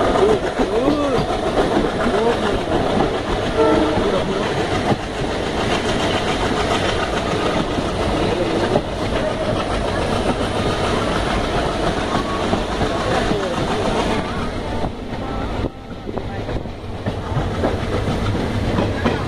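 Passenger train running along the track, heard from a carriage window: a steady rumble and clickety-clack of the wheels on the rails, with some voices mixed in over the first few seconds.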